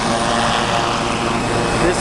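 Helicopter running, a steady engine and rotor sound. A voice comes in at the very end.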